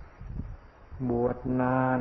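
An elderly man's voice speaking Thai slowly, drawing out two long syllables in the second half, after about a second's pause with only low background hum.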